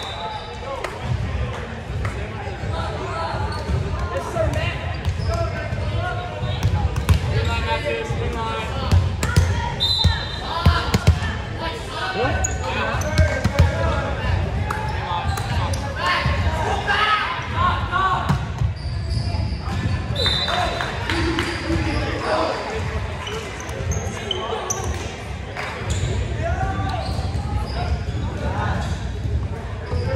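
Volleyball match in a reverberant gym: the ball bouncing on the floor and being struck, with indistinct players' and spectators' voices. Short high referee whistle blasts sound at the start, about ten seconds in and about twenty seconds in.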